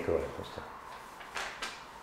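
Two brief paper rustles about a second and a half in, a quarter-second apart, as a sheet of paper is handled.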